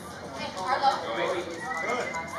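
Overlapping shouts and calls from players and onlookers on an outdoor soccer pitch, several raised voices at once.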